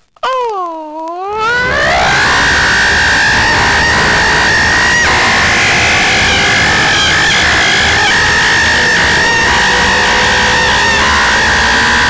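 A long, drawn-out yell, "yeeeaaah": the voice slides down and back up in pitch for about the first second, then holds one high, very loud, harshly distorted note.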